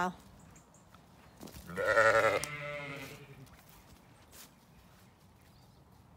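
A ewe bleating once, about two seconds in: a single quavering call lasting about a second and a half.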